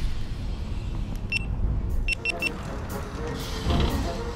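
A low steady rumble, with one short electronic beep about a second in and three quick beeps a second later.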